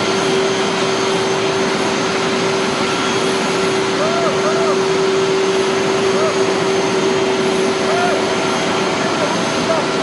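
Jet aircraft engine running, a loud steady rush with a constant low hum, with a few brief faint voices over it.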